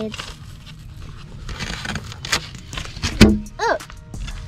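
Old marine carpet being pulled off a boat hatch lid: rough tearing and scraping, with a few sharp cracks, the loudest about three seconds in.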